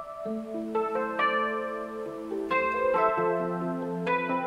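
Roland Fantom 7 synthesizer playing an electric piano sound: slow chords held and changed several times, the notes sustaining and overlapping.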